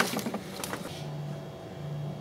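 A steady low hum with a faint, even whine above it, under some rustling in the first second.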